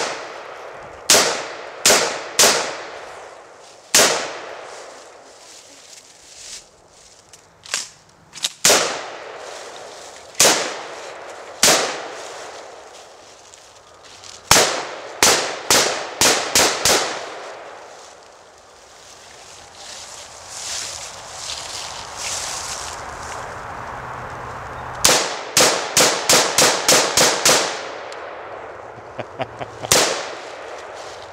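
AR-15-style semi-automatic rifle fired outdoors: single shots at uneven intervals for the first half, several coming in quick pairs and triples, then a rapid string of about eight shots near the end.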